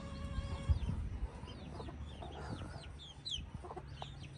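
Chicks peeping in many short, high chirps, with a hen's lower clucks among them.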